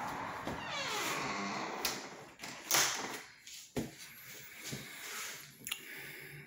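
A door squeaking on its hinges, followed by several sharp clicks and knocks as it is shut, the loudest about three seconds in.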